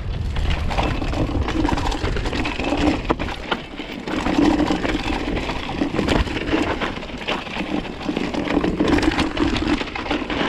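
Downhill mountain bike riding over a dry, rocky dirt trail: tyres crunching on dirt and loose stones under a constant clatter of small knocks and rattles from the bike, with a low wind rumble on the microphone.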